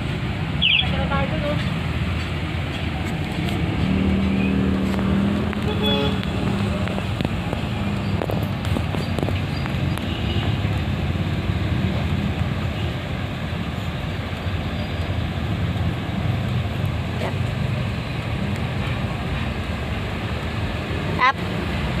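Small dog playing with a plush toy right against the phone: a steady low rumble of fur and toy rubbing on the microphone, with a few short low vocal sounds from the dog, one held for about a second and a half around four seconds in.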